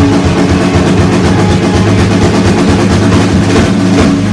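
Live rock band playing loud on electric guitar, bass guitar and drum kit: held guitar and bass notes under a fast, even run of drum strokes.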